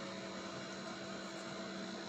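Steady low hum with a constant hiss: room tone, with no distinct event.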